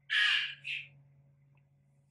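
A bird's harsh call sounding twice in quick succession: a caw of about half a second, then a shorter one.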